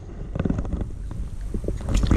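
Wind rumbling on the microphone at the water's edge, with a short splash right at the end as a released crappie drops back into the lake.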